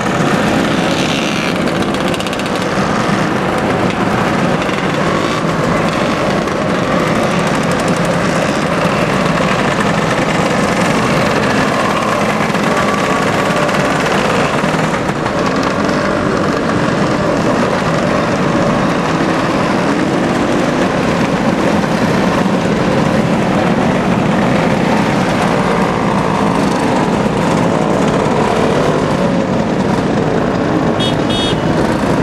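A long procession of classic two-stroke Lambretta and Vespa scooters riding past one after another, their small engines running continuously with a rapid rattling exhaust beat.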